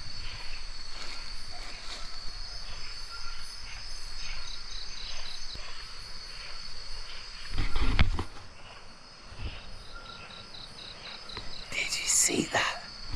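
Night-time tropical jungle insects: a steady high-pitched drone with runs of quick, evenly spaced chirps, twice. A louder low thump and rustle cuts in about eight seconds in.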